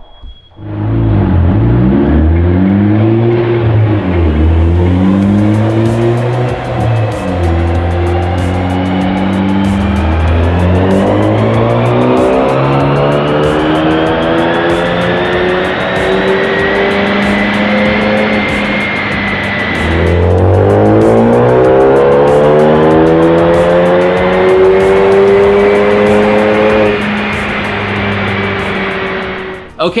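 Ford Focus ST's turbocharged 2.0 L EcoBoost four-cylinder revving hard on a chassis dyno. It starts with a few short rises and drops, then climbs steadily in pitch, falls away sharply about twenty seconds in, and climbs again until it cuts off shortly before the end.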